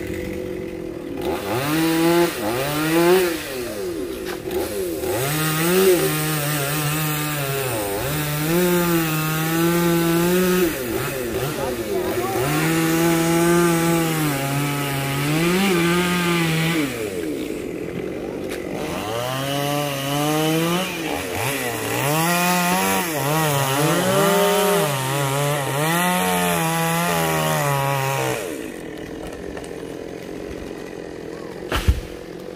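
Chainsaw running at high revs through a series of cuts into a tree trunk. The engine pitch holds for a second or two, sags under load and climbs again, and drops back briefly about halfway through and again near the end.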